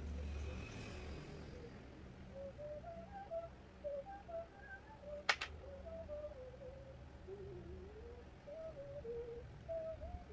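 A faint tune wavers up and down in the background over a steady low hum, with one sharp click about halfway through.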